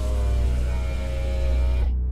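Electric car window winding down: a motor whine with a slowly falling pitch that cuts off sharply near the end, over a low droning music bed.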